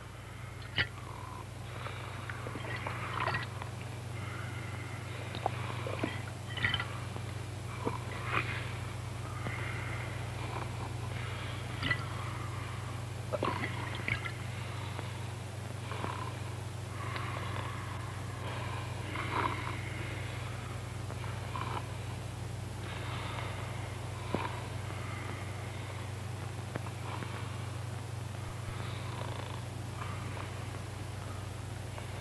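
A steady low hum with many short, high chirps scattered irregularly through it.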